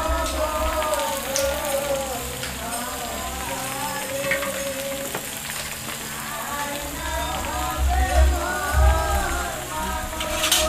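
Background music with a bending melody throughout, over a steady sizzle of vegetables frying in oil in an iron karahi.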